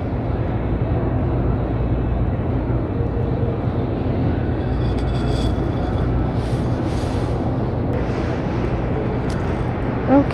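Steady low rumble and hum of a grocery store's background noise, with faint indistinct sounds over it around the middle.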